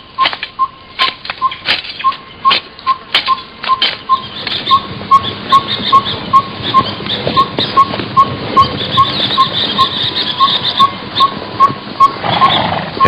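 Rural outdoor ambience: a small creature's short high chirp repeats evenly about three times a second over sharp clicks, with a higher hiss building from about four seconds in.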